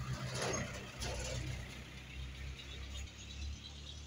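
A vehicle's engine running close by with a low steady rumble and some mechanical rattle, loudest in the first second and a half.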